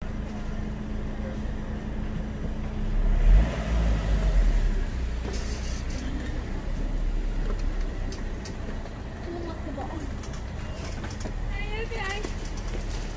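Car engine idling close by: a low, steady hum that swells louder about three seconds in and then settles back, with faint voices in the background.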